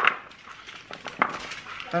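Bread cubes and chopped vegetables being tossed together on a metal sheet pan: scattered light clicks and scrapes, with one sharper click just past a second in.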